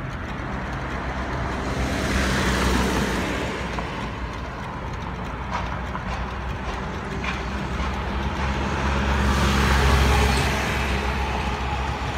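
Road traffic at a city crossing: vehicles running past over a steady low engine hum, swelling loudest about two seconds in and again around ten seconds in.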